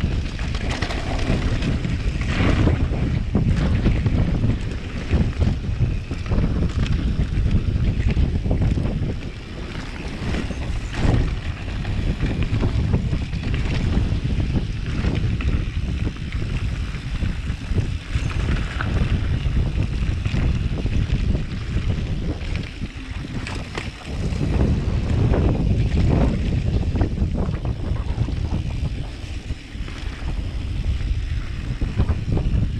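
Wind buffeting the microphone of a camera on a mountain bike riding down a dry dirt trail, mixed with the frequent knocks and rattles of the bike and tyres over rocks and bumps. The noise eases briefly a few times.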